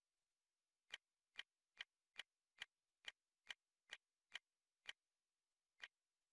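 A quick series of quiet, sharp, identical clicks, about two a second, ten in a row and then one more near the end, as the media player's on-screen menu is stepped through.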